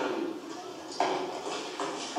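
Indistinct speech from a film soundtrack, with a sudden louder sound about a second in.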